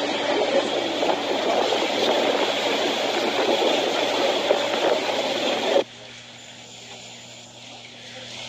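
Loud, steady rush of wind and choppy canal water, with motorboats under way. It cuts off abruptly about six seconds in, leaving a faint hiss.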